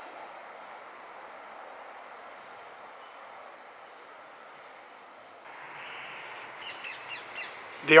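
Steady outdoor background hiss, with a bird giving several short, harsh calls near the end.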